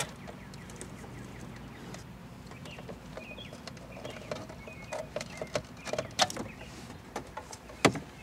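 Plastic wiring-harness connectors clicking and rattling as they are wiggled and pulled off the back of a car radio receiver, with several sharp clicks in the second half and the loudest just before the end, over a low steady hum.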